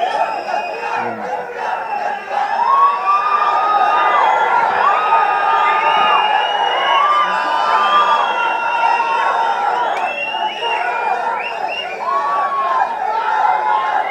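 A large crowd cheering and shouting without a break, many voices overlapping in long drawn-out yells.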